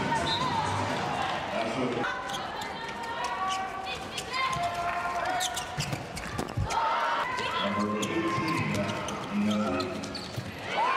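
Indoor handball match: the ball bouncing on the court amid shouting from players and the crowd, with one heavy thud about six and a half seconds in.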